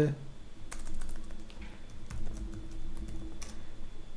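Typing on a computer keyboard: a run of irregular key clicks as a terminal command is edited and entered.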